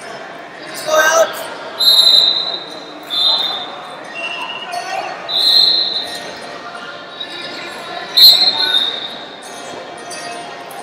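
Several short, steady, high whistle blasts from referees' whistles ring out in a large hall over a background of crowd chatter. The loudest blast comes near the end.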